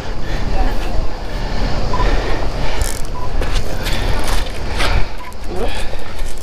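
Steady low rumbling outdoor noise with scattered rustles and knocks, and faint voices in the background.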